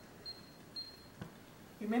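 Quiet kitchen with a faint, thin high tone heard in three short pieces and a soft click about a second in, then a woman's voice starts near the end.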